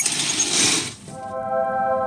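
Curtain fabric swished aside for about a second, followed by a steady held chord of background music.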